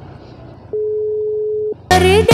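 Telephone ringback tone of an outgoing call: one steady beep about a second long, heard while the call rings through. Music starts abruptly just at the end.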